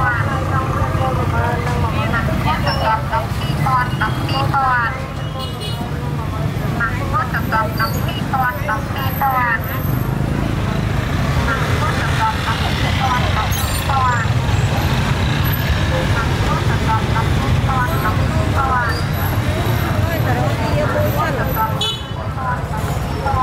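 Busy street-market ambience: many voices talking at once over the steady low running of motorbike engines.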